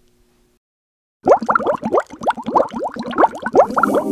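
Bubbling-water sound effect: a rapid string of short rising bloops, starting a little over a second in and running on to the end.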